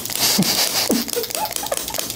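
Handheld chiropractic adjusting instrument clicking against the foot, a run of short sharp clicks, with a few brief rising squeaks in the first second and a half.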